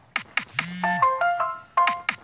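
Electronic kick drum from a phone music app's step sequencer: two quick hits, each with a falling pitch. Then a short ringtone-like synth phrase of quick stepped notes over a low bass note that drops away, and another kick near the end.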